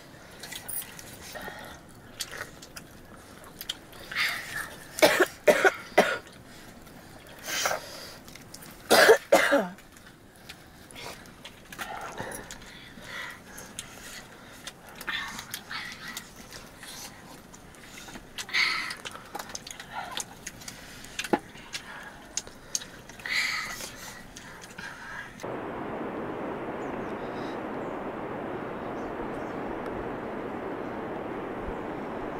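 Coughs and throat clearing, with sips and sharp clinks of steel plates and cups, during a meal around a fire. The loudest coughs come about five and nine seconds in. Near the end the sound changes abruptly to a steady even hiss.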